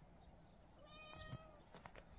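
A domestic cat meows once, faintly, about a second in: a single short call of about half a second.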